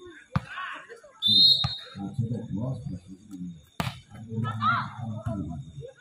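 A referee's whistle blows briefly about a second in. Sharp smacks of a volleyball being hit follow, three in all, over a commentator's voice.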